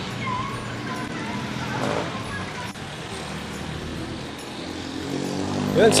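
City street traffic: motor vehicle engines, motorcycles among them, running close by over a steady hum of road noise.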